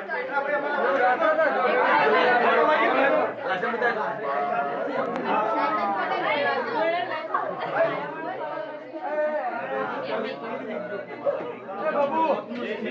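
A group of men's voices talking over one another, steady overlapping chatter with no single clear speaker.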